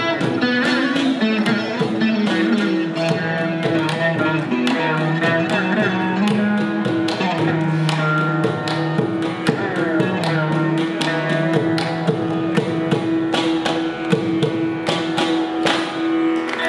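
Live Carnatic music: a veena plays a gliding melody over a steady drone, with frequent mridangam drum strokes.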